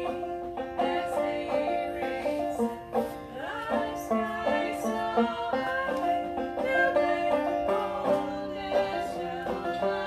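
A banjo played in a folk or old-time style, with a steady run of plucked notes and voices singing over it.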